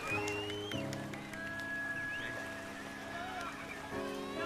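Background music of soft sustained chords, a fuller chord entering under a second in and held steady through the rest.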